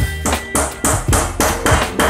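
Background music with a steady beat and guitar, over which a hammer taps a nail into wooden framing, fixing PVC conduit to a stud.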